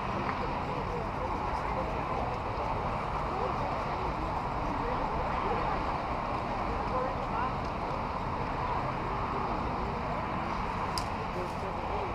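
Steady babble of many overlapping voices at a distance, with no single voice clear enough to make out.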